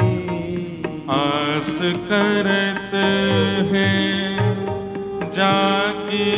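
A man singing a devotional chant with musical accompaniment: long held notes with wavering ornaments over a steady drone, with a short break about a second in.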